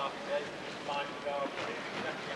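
Whitewater rushing down a slalom course, a steady hiss of churning water, with a brief fragment of a man's voice about a second in.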